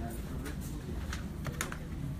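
Handling noise from a phone recording: a few light clicks and rustles over a steady low hum.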